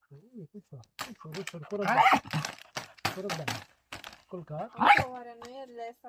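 A dog vocalizing in a run of short pitched calls. The loudest come about two seconds in and about a second before the end, the last one drawn out into a held note.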